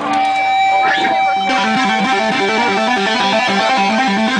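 Amplified electric guitars break into a fast, repeating riff about a second and a half in, over a steady ringing tone; voices are heard just before the riff starts.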